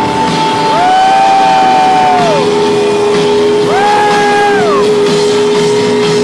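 Live rock band playing loud, with electric guitars and drums. Long sustained notes glide up, hold and slide back down, twice, over a steady held tone.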